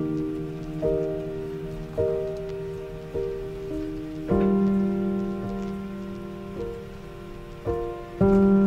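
Instrumental break of a pop ballad: piano chords struck about once a second, each left to ring and fade, with a fuller, louder chord about four seconds in. A steady soft hiss with faint crackles runs underneath.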